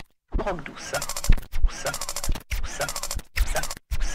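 Hardtek electronic track: a spoken vocal sample cut into short stuttering fragments with sudden gaps of silence and scratch-like sweeps, punctuated by a few heavy kick drum hits.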